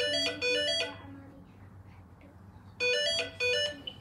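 A short electronic melody of quick, bright stepping notes, like a phone ringtone, plays for about a second, breaks off, and comes back for about another second near the end.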